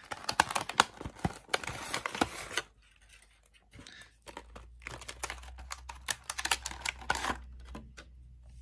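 Stiff clear plastic blister packaging crackling and clicking as it is handled, with dense crackles for the first two and a half seconds, a short lull, then more crackling until near the end.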